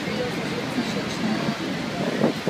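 Steady rushing noise of Niagara Falls mixed with wind on the microphone, with faint murmur of voices in the background.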